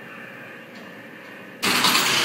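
Computerized flat knitting machine running its reset cycle: a steady low mechanical hum, then, about one and a half seconds in, a much louder rushing noise sets in and holds.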